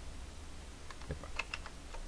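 A few single computer-keyboard key presses, heard as separate sharp clicks mostly in the second half, over a low steady hum.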